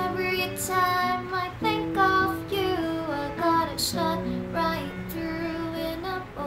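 A woman singing a slow melody to her own acoustic guitar, which plays sustained chords beneath the voice.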